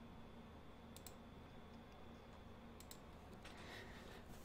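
Near silence, broken by a few faint clicks: one about a second in and a couple near the three-second mark.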